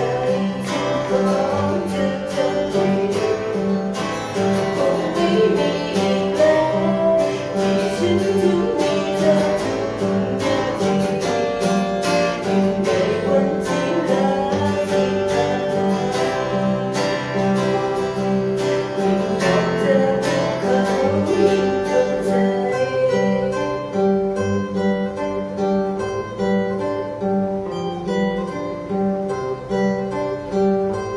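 A woman singing a song while strumming a classical nylon-string acoustic guitar. Her voice drops out about two-thirds of the way through, leaving the guitar playing on alone.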